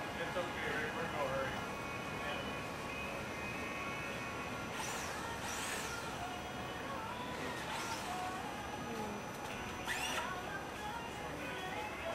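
Indistinct chatter of many people in a busy hall, with music playing in the background.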